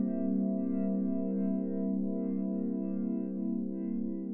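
Ambient music: sustained, effects-laden tones over a steady low drone, fading slightly near the end.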